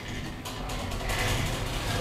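Self-rocking chair built on a sewing-machine stand, its drive mechanism and belts running with a steady mechanical hum while the chair rocks under a seated person's weight.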